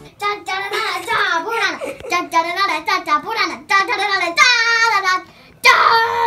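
A child singing in a high, playful voice: a quick run of short sung syllables bending up and down, a brief pause, then a loud held note starting near the end.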